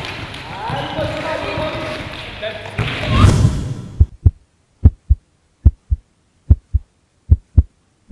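Futsal court sound with players' voices and ball play, then a whoosh about three seconds in. After the whoosh comes a heartbeat sound effect over silence: paired low beats, lub-dub, a little over one pair a second.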